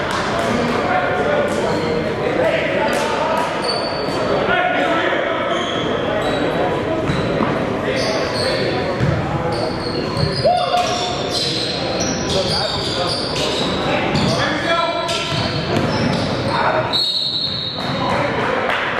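A basketball game in a gym: a basketball bouncing on the hardwood court, short high sneaker squeaks and players' voices, all echoing in the large hall.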